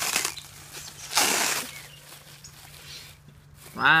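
Plastic bubble wrap crinkling as it is pulled open by hand: two short bursts of rustling about a second apart.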